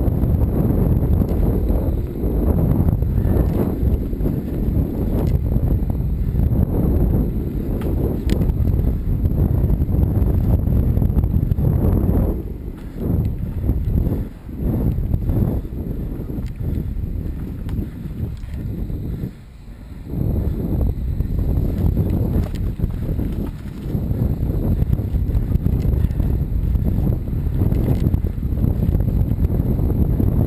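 Mountain bike riding a dirt singletrack: wind buffeting the camera microphone with the rattle and clatter of the bike over the trail. The rumble drops away briefly a couple of times around the middle, as if the bike slows or coasts.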